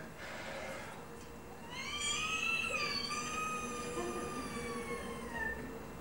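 A sound poet's high, siren-like mouth sound into a microphone: a single tone that rises in a little under two seconds in, holds while slowly falling, and stops shortly before the end.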